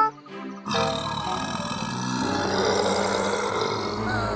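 A long, rough, roar-like animal sound effect over background music, starting about a second in and held for about three seconds.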